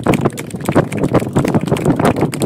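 A small audience applauding: many hands clapping in a dense, steady patter.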